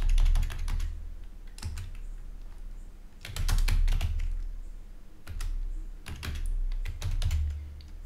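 Typing on a computer keyboard: several short bursts of keystroke clicks, each with a dull low thud, as shell commands are entered in a terminal.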